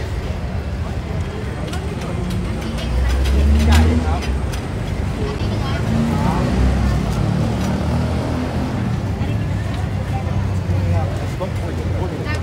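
Crowd chatter at a busy outdoor street food market, with the low rumble of a nearby engine that swells about three seconds in and again around six seconds.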